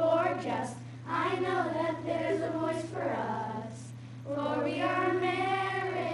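A group of children singing together in sung phrases of held notes, with brief pauses about a second in and again around four seconds.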